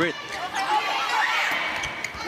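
Volleyball rally in an indoor arena: steady crowd noise, with several short squeaks of players' shoes on the court.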